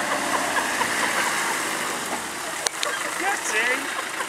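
Land Rover Discovery creeping through mud and pulling up, engine running under a steady noisy hiss, with one sharp click about two-thirds of the way through.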